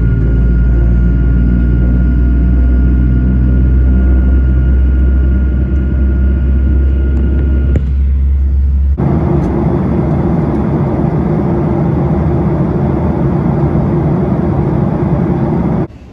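Jet airliner cabin noise: a heavy, steady engine hum with a thin steady whine over it. About nine seconds in it switches abruptly to a fuller, rushing noise with the whine gone.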